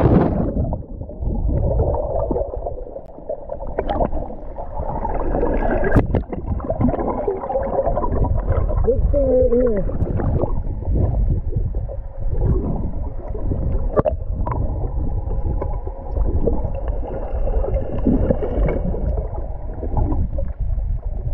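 Underwater water noise heard through a submerged camera: a dull, muffled, churning rumble with a few faint clicks.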